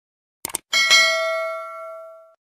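A couple of quick clicks, then a small notification-bell sound effect is struck twice in quick succession and rings out slowly. This is the ding of a subscribe-button bell being clicked.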